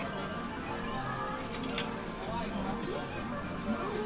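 Busy game-arcade din: overlapping machine music and jingles over a bed of background voices, with a few short clicks in the middle.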